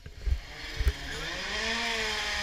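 Rally car engine approaching, its note rising and dipping with the revs and growing louder, after a few low thumps on the microphone in the first second.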